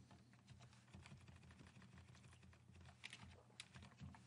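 Faint clicking of a computer keyboard: a few scattered key presses, the sharpest two about three seconds in, over a low steady hum.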